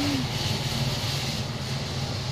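Steady low motor hum that holds level throughout.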